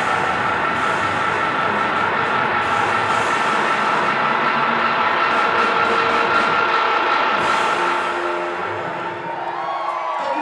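Electric guitar and drum kit of a live rock duo playing a loud, sustained closing wash with cymbals, a steady high ringing tone held over it. The sound dies down near the end as the song finishes.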